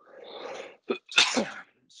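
A man sneezes into the crook of his elbow: a drawn-in breath, then one loud sneeze about a second in.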